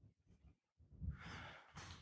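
Near silence, then a faint exhaled breath or sigh from a man about a second in.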